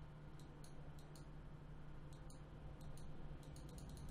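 Faint computer mouse clicks, a dozen or so at irregular intervals, as values are adjusted in software. A low steady hum runs underneath.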